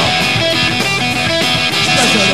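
Punk rock band playing live: electric guitar and a drum kit driving a loud, steady instrumental passage between sung lines.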